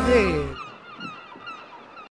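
Gulls crying, several short calls over a faint beach background, after the last sung note of the jingle fades about half a second in. The sound cuts off abruptly at the end.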